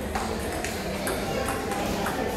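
Table tennis ball struck back and forth in a rally, sharp clicks of ball on bat and table about twice a second.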